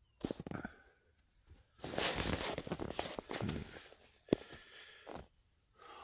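Fabric and bedding rustling in irregular bursts as a person shifts about inside a tent and handles the camera, with a single sharp click a little after four seconds in.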